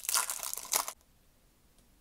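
Plastic wrapper of an Upper Deck MVP hockey card pack being torn open and crinkled by hand, stopping about a second in.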